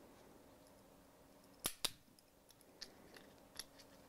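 Small plastic clicks from a little screwdriver prying the inner cover out of a plastic bottle's pour cap. There are two sharp clicks close together a little before the middle, then a few faint ticks.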